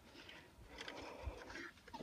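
Very faint outdoor background noise, with a few soft, indistinct sounds in the middle and no clear event.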